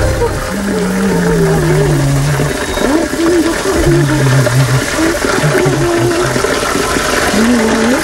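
A stream of water pouring from a spout and splashing steadily, with indistinct voices over it.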